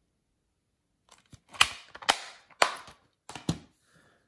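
Plastic Blu-ray case being snapped shut and put down: a run of about five sharp plastic clicks and knocks starting about a second and a half in, with handling rustle between them.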